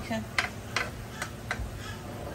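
Metal spatula clicking and scraping against a wok while stir-frying greens: about five sharp clicks, roughly three a second.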